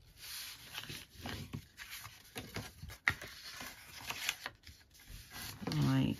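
A bone folder rubbed over the score lines of a sheet of patterned paper, burnishing the creases: a run of short, irregular scraping strokes, with a sharp click about three seconds in.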